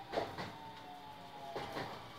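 Faint interior noise of a local train cabin, with a thin steady whining tone and a few soft knocks.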